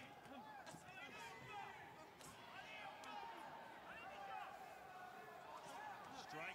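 Near silence with faint voices in the background, the fight broadcast's own commentary turned down low.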